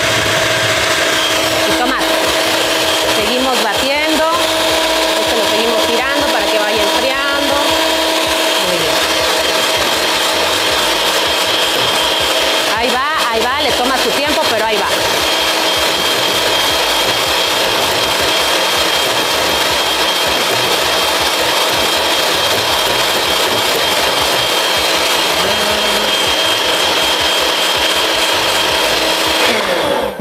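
A Hamilton Beach electric hand mixer runs steadily at high speed, its beaters whipping chilled cream in a glass bowl until it thickens.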